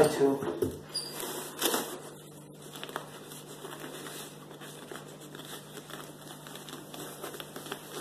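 Rustling and handling noise from the fabric and Velcro straps of a play yard being fastened underneath, with one brief louder rustle just under two seconds in. A low, steady hum runs underneath.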